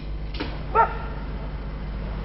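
A dog barks briefly, a short call a little under a second in, over a low steady background hum.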